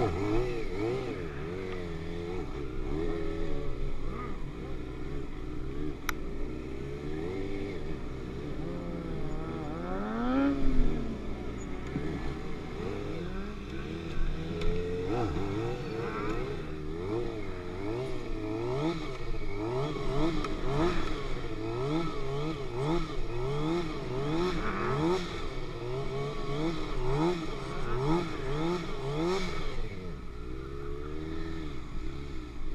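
Stunt sportbike engine revving up and down as the rider works the throttle, with one sharp rise and fall about a third of the way in. In the second half the revs rise and fall regularly, about once a second.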